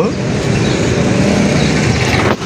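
Steady road traffic noise: an even rumble and hiss with no distinct events.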